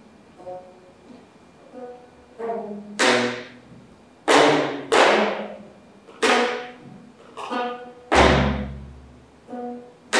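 Geomungo, the Korean six-string zither, played with a bamboo stick: the strings are struck in sharp percussive strokes roughly a second apart, each ringing on in a decaying pitched tone. A deep drum thump comes about eight seconds in.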